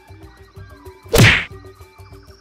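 A single loud impact sound effect about a second in, lasting under half a second, with a falling low boom beneath it, marking a cut to a title card. It plays over background music with a light steady beat.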